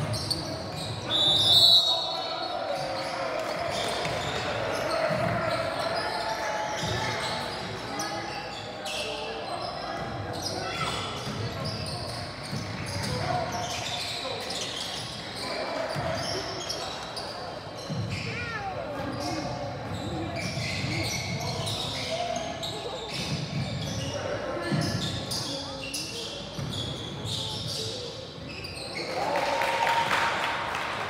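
A referee's whistle blows once, brief and loud, about a second and a half in, stopping play. Then voices and bouncing basketballs echo through the gym hall during the stoppage. A steady buzzer tone starts near the end.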